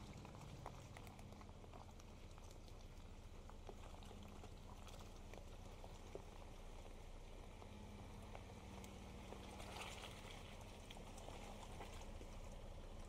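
Faint, steady low rumble of a Chevrolet Colorado pickup's engine as it crawls slowly down into a muddy washout, with scattered small wet ticks and splashes from the tyres in the mud.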